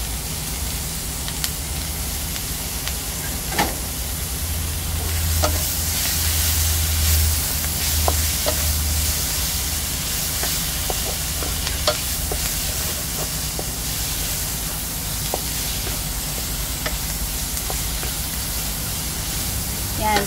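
Pork, onion, garlic, ginger and tomato sizzling steadily in a hot wok, stirred with a wooden spatula that scrapes and knocks against the pan now and then.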